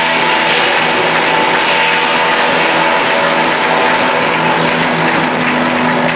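Blues band playing live: Fender Stratocaster electric guitar over bass and drums, loud and steady, with regular drum strokes through it.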